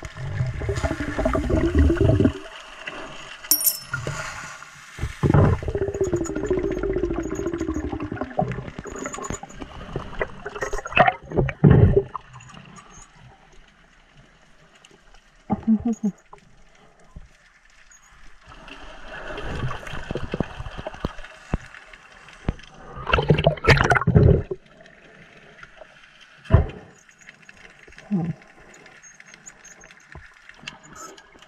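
Underwater sound of a scuba diver breathing: several long bursts of exhaled bubbles rumbling and gurgling, separated by quieter stretches, with a few short knocks.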